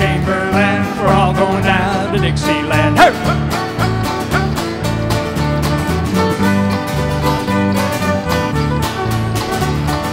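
Live Irish folk band playing an instrumental break between verses: a fiddle carries the melody over strummed acoustic string instruments and a bass guitar keeping a steady bass line.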